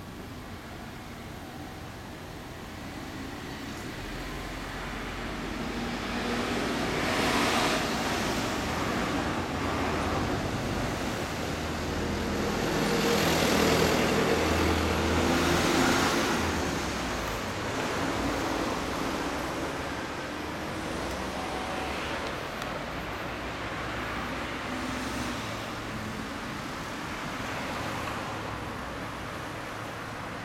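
Road traffic going by on a street: several vehicles pass one after another, each swelling up and fading away, the loudest about halfway through.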